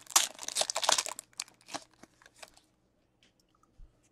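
Foil wrapper of a trading card pack being torn open and crinkled by hand. The crackling is densest in the first second, thins out over the next second and a half, then stops.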